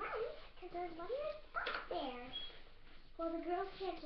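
A young girl's high voice making short sliding sounds with no clear words.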